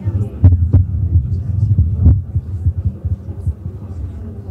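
A loud low electrical hum with uneven throbbing and three sharp pops, about half a second, three quarters of a second and two seconds in: sound-system noise while the film's missing audio is being worked on.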